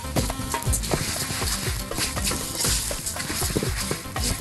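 A spatula stirring raw rice into toasted vermicelli in a hot pot, with many short scraping clicks of grains against the pot and a light sizzle. Background music plays under it.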